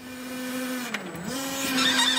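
Electric forklift motor whining steadily. Its pitch dips a little past a second in and then climbs back, and higher, wavering whine tones come in during the second half.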